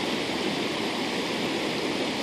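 Steady rushing of a flooded, overflowing creek's muddy water.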